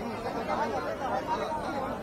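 Crowd of people talking at once, a mixture of overlapping voices with no single speaker standing out.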